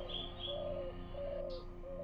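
Faint bird calls: low, repeated cooing notes, with a few short high chirps near the start.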